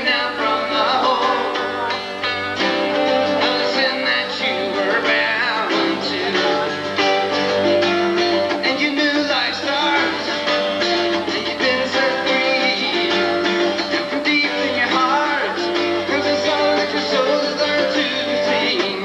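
Live music from two acoustic guitars strummed together in a steady song, with a singing voice in places.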